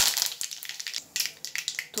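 Tempering in hot oil and ghee crackling and spitting: fresh curry leaves and mustard and cumin seeds popping in a steel kadhai. It is loudest at first, eases off about a second in, then a few more sharp pops follow.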